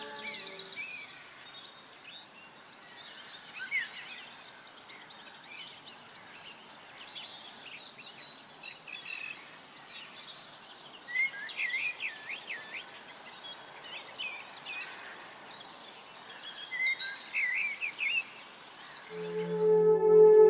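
Small birds singing and chirping over a steady outdoor background hiss, with busier bursts of song around the middle and again near the end. Ambient music with a sustained singing-bowl-like tone comes back in just before the end.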